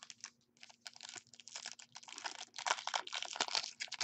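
A foil pack of trading cards being torn open and crinkled by hand: a dense run of rapid crackles that grows louder through the second half.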